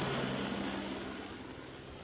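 Helicopter flying away: a steady low drone under a noisy rush that fades gradually as it recedes.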